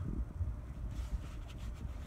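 Low, uneven rumble of handling noise on a handheld phone's microphone as it is moved about, with a few faint ticks about a second in.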